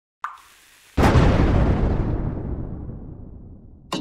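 Cartoon sound effects for a chemistry mix-up: a short plop of liquid, then about a second in a loud explosion blast that fades away over about three seconds.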